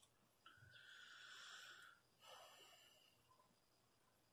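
Faint breathing: two breaths, the first about a second and a half long, the second shorter, about two seconds in.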